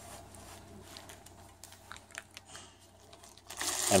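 Clear plastic wrap on a steel basketball pole crinkling faintly as the pole is handled, with a few light scattered clicks in the middle.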